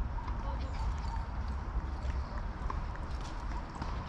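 Quiet outdoor park ambience: a steady low rumble with light, irregular footsteps.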